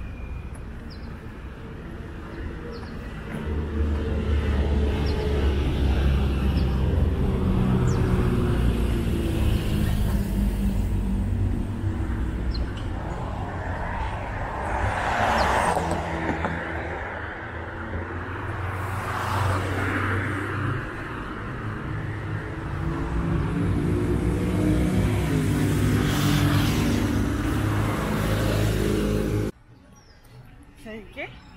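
Street traffic: vehicle engines running close by, with vehicles passing in swells about halfway through and again near the end. The sound cuts off suddenly just before the end.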